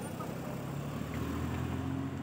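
Car engine running at low speed as a car moves slowly past close by, a steady low hum.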